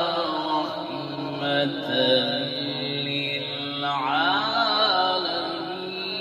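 A man's voice chanting a devotional recitation through a microphone and loudspeakers, drawing out long melodic notes with a winding run about four seconds in, over a steady background of held tones.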